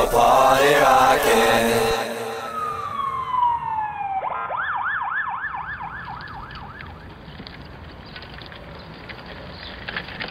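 Dance-pop music stops about two seconds in, giving way to a falling tone and then a siren yelping in quick rises and falls, about three a second, for a few seconds. It then fades into low background noise.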